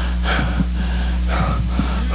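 A man's heavy breaths through a handheld microphone, two audible breaths as he catches his breath between shouted lines of preaching, over a steady low hum.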